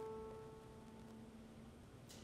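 Very quiet piano music: a single note struck just before fades away over a soft held low note.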